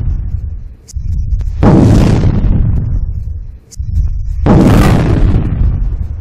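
Loud cinematic boom sound effects for an animated title sequence: the tail of one hit at the start, then two more heavy hits, about one and a half seconds in and just before the five-second mark. Each starts suddenly and fades over a couple of seconds in a deep rumble.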